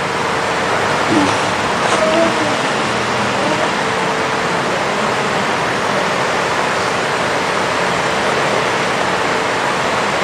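A steady rushing noise, even and unbroken throughout, with a faint low hum under it and brief faint murmurs of voice about one and two seconds in.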